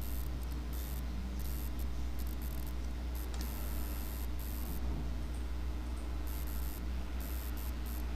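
Steady hiss and a low electrical hum from an open microphone, with no other distinct sound.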